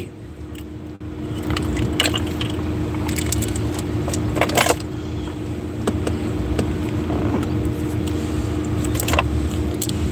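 Car interior noise: a steady low rumble and hum from the engine and road, growing louder about a second and a half in, with a few light clicks and rattles.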